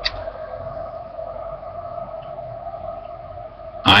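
A steady background hum holding two even tones, with a single short click right at the start.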